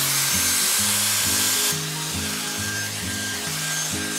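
Round-brush hot-air styler blowing steadily while it is drawn through the outer layer of hair, its airflow dropping slightly just under two seconds in, over background music with a low stepping bass line.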